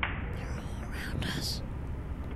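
A brief whispered voice, breathy and without clear words, over a steady low rumbling noise, starting just after a click.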